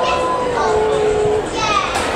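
Voices shouting on a football ground as a goal goes in: one long held shout, then a short falling cry near the end.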